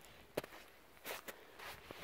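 Footsteps in shallow snow: a handful of short, separate steps, faint.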